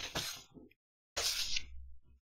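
A man's voice trailing off at the end of a word, then a short breath in a little over a second in, with silence around it.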